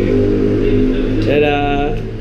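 A person's voice making a drawn-out, wordless vocal sound over a steady low hum, with a second pitched vocal sound near the end.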